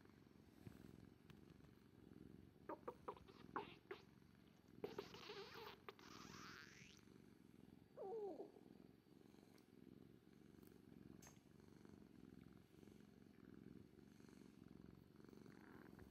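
Orange tabby cat purring, a faint, low, steady purr while it is stroked. A few gurgles of a person's stomach growling after a meal come through: a rising gurgle about five seconds in and a short falling one at about eight seconds.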